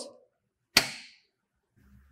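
A single sharp click about three-quarters of a second in, as the power switch on the lab's single-phase AC voltage source module is flipped on; otherwise near silence.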